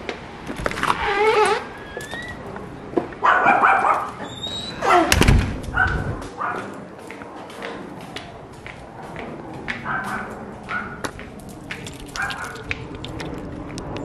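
A dog whining and giving short yips again and again, with a loud thump a little past five seconds in.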